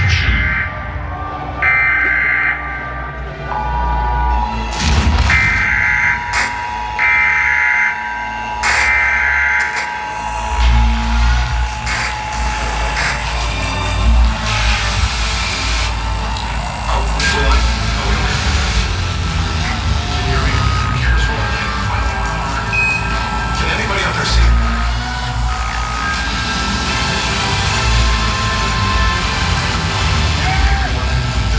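Pre-show intro soundtrack over an arena PA: a run of alarm-like beeps, each about a second long, over a held tone. About ten seconds in, a deep bass rumble takes over.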